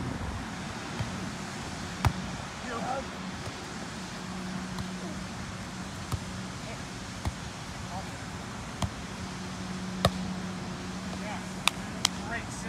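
A volleyball being struck by players' hands and forearms during a rally on grass: sharp single slaps several seconds apart, closer together near the end, the last one the loudest.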